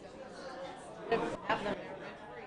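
Chatter of several people talking at once, with one voice coming through louder about a second in.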